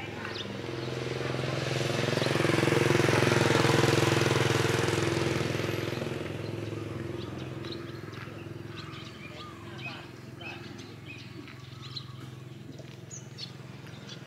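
A motor vehicle drives past on the road, its engine sound swelling to a peak about three to four seconds in and fading away over the next few seconds. Faint bird chirps follow in the second half.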